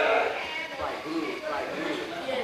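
Indistinct voices of people talking.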